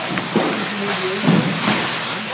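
Radio-controlled 4WD racing buggies running on the track, their motors rising and falling in pitch as they speed up and slow through the corners.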